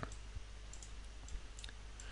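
A few faint, scattered clicks of a computer mouse being worked by hand, over a low steady hum.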